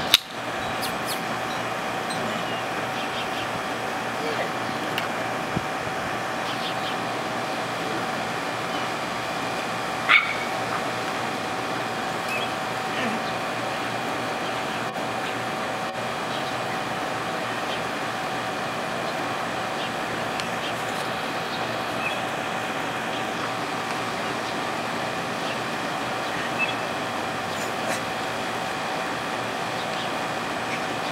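A steady machine-like hum throughout, with one short, sharper sound about ten seconds in.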